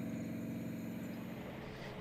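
Steady engine drone of a distant train's diesel locomotive, with a low even hum that fades slightly toward the end.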